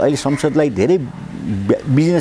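A man speaking, with a short pause a little after a second in.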